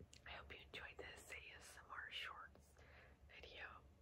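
A woman whispering faintly, in short breathy phrases.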